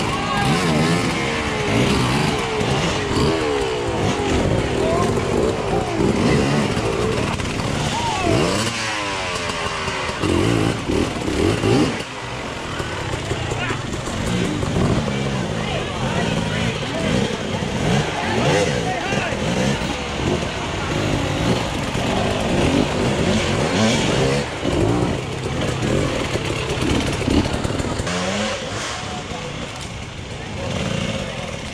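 Enduro dirt bike engines revving in bursts, rising and falling, as the riders climb a steep rocky section, with one clear rising rev about nine seconds in. Spectators' voices run underneath.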